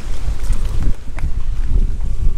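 Wind buffeting the microphone of a camera carried on a moving electric scooter: a loud, uneven low rumble with no steady tone.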